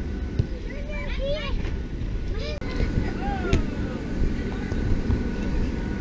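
Steady low rumble of an inflatable bounce house's electric air blower, with children's high voices calling out over it and a sharp knock about three and a half seconds in.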